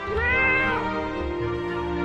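A domestic cat meows once, the call rising then falling and lasting under a second, over background music.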